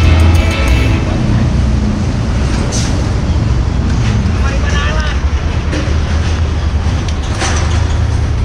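Heavy diesel engine running steadily with a low, continuous rumble, with people's voices in the background.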